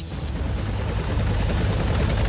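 Helicopter rotor chopping fast and evenly over a low engine rumble, growing louder as it approaches.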